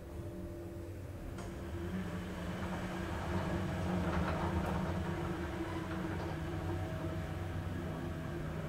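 Ride noise inside the car of a 2009 Schindler 5400 traction elevator travelling down: a steady low hum and rumble that grows louder over the first few seconds as the car gets under way, then holds, with a single click about one and a half seconds in.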